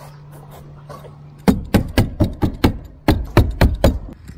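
A stapler fastening synthetic roof underlayment to the plywood deck: a quick run of sharp strikes, about four a second, starting about one and a half seconds in, with a short pause near three seconds.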